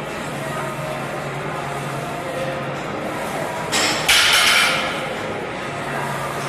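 A heavy barbell deadlift in a gym, over a steady background with a low hum. About four seconds in, as the loaded bar goes up, there is a loud, harsh burst of noise lasting about a second.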